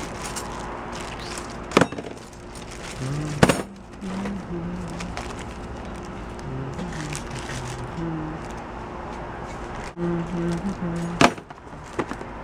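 Hands rummaging in a plastic storage tote: rustling of plastic bags and packets, with a few sharp clicks and knocks as items are picked up, about two, three and a half, and eleven seconds in. A slow, low tune of held notes runs faintly underneath.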